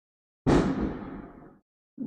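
A firework going off: one sudden bang about half a second in, its rumble dying away over about a second.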